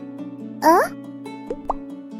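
Cartoon bubble sound effects over light background music: one loud, quick rising bloop about half a second in, then two short rising plops later on.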